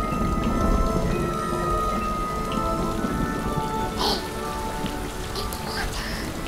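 Steady rain falling on wet pavement.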